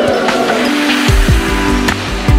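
Wedding guests cheering and clapping after a toast. About a second in, a dance track with a heavy electronic beat and deep, repeated kick drums starts.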